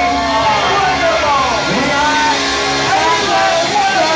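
Live rock band playing, with several voices singing and calling out over sustained chords, through a loud club sound system.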